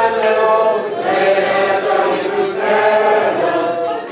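A group of people singing together, with long held notes.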